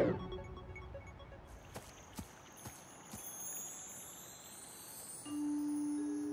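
Cartoon electronic sound effects of a robot being shut down from a tablet: a few soft clicks, then faint high electronic tones, with a low steady tone coming in near the end.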